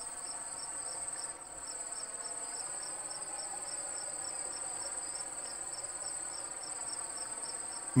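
Insects chirping, a cricket-like chorus: a steady high-pitched trill with a regular pulsing chirp just beneath it.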